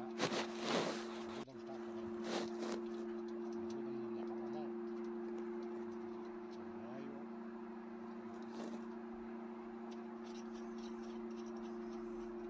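Hands and a tool working at a bolt on a car's steel dashboard support bar: short scraping and rustling bursts, loudest in the first second, again around two and a half seconds in and briefly near nine seconds. A steady low two-tone hum runs underneath.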